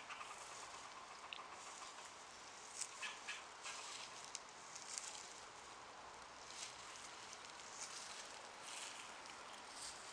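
Faint, scattered rustles and light scratches over a quiet hiss.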